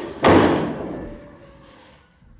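A heavy door slam about a quarter second in, loud and sudden, ringing away over about a second and a half. A short knock comes just before it.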